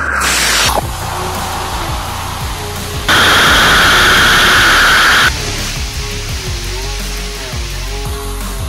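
The team-built 'Koala' amateur rocket motor firing on a horizontal static test stand: a steady, noisy rushing roar of the burn. It is loudest for about two seconds in the middle, starting and stopping abruptly, with a short loud burst right at the start. Background music plays faintly underneath.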